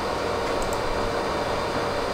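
Steady, even hiss of a pink-noise test signal used for speaker measurement, with no change in level.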